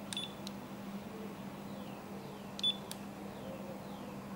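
Two short, high electronic beeps, each with a small switch click, about two and a half seconds apart, the second louder. They come from the radio control being worked to switch off the hazard warning lights of a 1/10 scale RC truck. A faint steady hum runs underneath.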